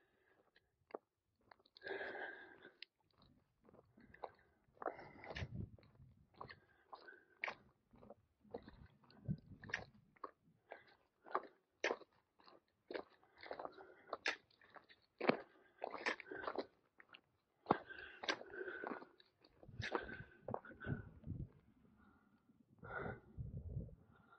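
Footsteps crunching on a dirt hiking trail, an irregular run of soft scuffs and clicks with brief rustling between them.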